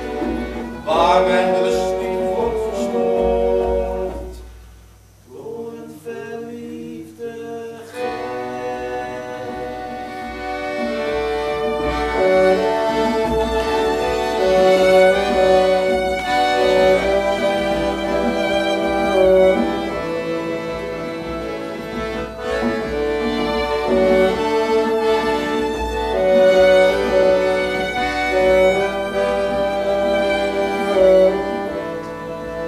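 A small live folk-style band of violins and accordion playing an instrumental passage. It thins out and drops quieter about four seconds in, then comes back fuller from about eight seconds in.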